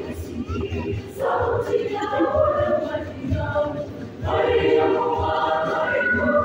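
Youth choir singing in parts, with a phrase break about a second in and a louder, fuller passage from about four seconds in.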